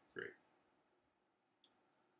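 Near silence: room tone, with the end of a spoken word at the very start and a single short click about a second and a half in.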